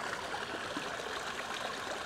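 A small forest stream flowing over rocks, a steady rushing and trickling of water.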